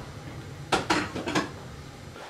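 Clinking and clattering of dishes and cutlery, a cluster of a few sharp clinks about a second in over low room noise.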